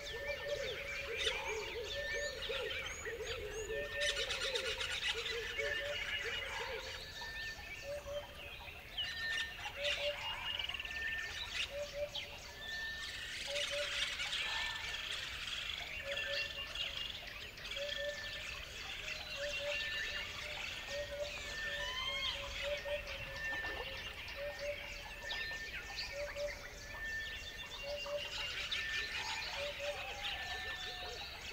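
Many birds chirping and singing together, dense high twittering throughout, with a short low call repeated about once a second.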